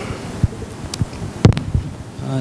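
A few soft low thumps and one sharp knock about one and a half seconds in, over a low steady hum of room noise.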